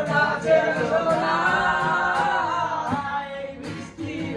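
Male voices singing a long, wavering melody with an acoustic guitar strummed underneath.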